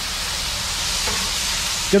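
Chopped chicken thighs sizzling steadily on a Blackstone flat-top griddle over high heat.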